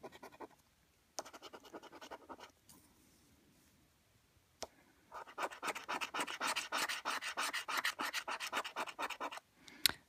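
A coin scratching the scratch-off coating from a paper scratchcard: two short, quiet bouts of strokes, a lull with a single click, then from about five seconds in a longer, louder run of rapid back-and-forth strokes that stops just before the end.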